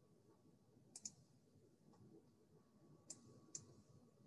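Near silence: faint room tone with a few short clicks, a close pair about a second in and two more near the end.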